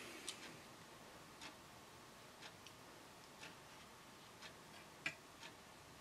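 Near silence, with a clock ticking faintly about once a second and a slightly sharper click about five seconds in.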